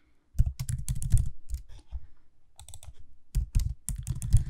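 Typing on a computer keyboard: two quick runs of keystrokes with a short pause in the middle.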